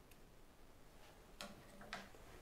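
Near silence with a few faint clicks as the pickup winder and its bobbin are handled: one just after the start and two close together near the end.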